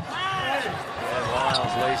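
A basketball bouncing on a hardwood court, a few dribbles about a second apart, under many short, high sneaker squeaks on the floor. The commentator's voice comes in right at the end.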